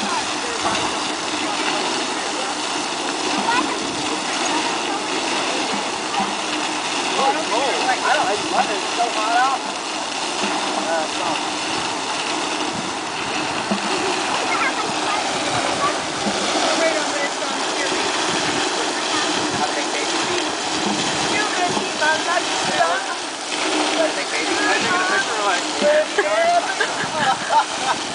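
Large fountain jet spraying and falling back into its basin: a steady rush of water. People's voices talk on and off over it.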